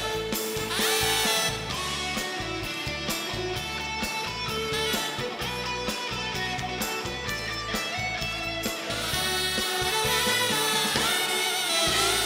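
Live band playing an upbeat trot instrumental break, with an electric guitar taking the lead over bass and a steady drum beat.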